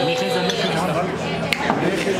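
A man's long held sung note trails off, then a few sharp clinks of dishes and cutlery on a set dinner table, over background voices.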